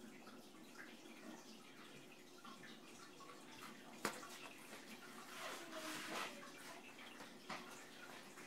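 Quiet room with a faint steady background, a single sharp click about four seconds in, and a few fainter, indistinct sounds later on.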